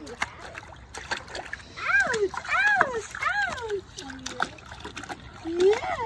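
Baby splashing and patting the water of a shallow plastic kiddie pool, with irregular small splashes throughout. A run of three high, arching squeals comes about two seconds in, and another near the end.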